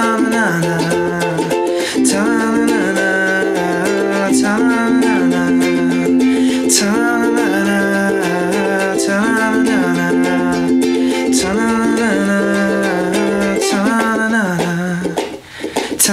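Ukulele strummed in a steady rhythm, with a man's voice singing a wordless melody over it. Shortly before the end the sound drops briefly before the strumming resumes.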